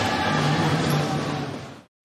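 Basketball arena background noise, a steady hiss with a faint low hum, fading out to silence near the end.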